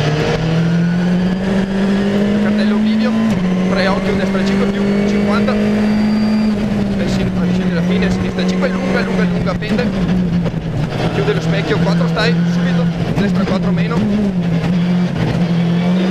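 Skoda Fabia R5 rally car's turbocharged four-cylinder engine pulling hard, heard from inside the cabin. Its note climbs and drops sharply about three seconds in with an upshift, then rises again and falls and wavers as the car brakes and accelerates through the bends. Clicks and knocks from the car come through the whole time.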